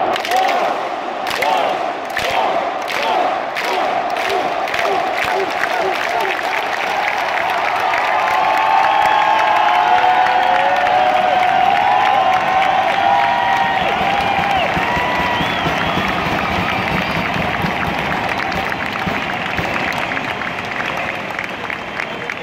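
Large stadium crowd clapping in unison, the claps coming closer together over the first few seconds, then breaking into sustained cheering and shouting that is loudest about ten seconds in.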